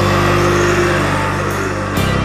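Gothic doom metal music: heavy distorted guitars and bass hold a low, sustained chord, and a new chord is struck right at the end.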